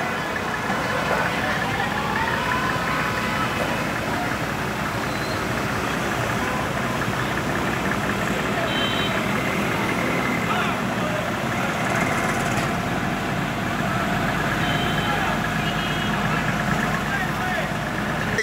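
Fire engine idling under many people's voices talking at once, in a steady, busy mix; the low engine hum grows steadier about two-thirds of the way through.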